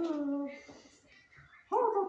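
Wavering, whimper-like humming from a person's voice, dog-style, fading out about half a second in and starting again louder near the end.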